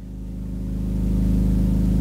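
A low, steady hum with many evenly spaced overtones, swelling louder through the pause.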